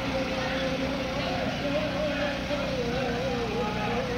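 A voice chanting one long, slowly wavering melodic line through a loudspeaker, over a steady low rumble of street and crowd noise.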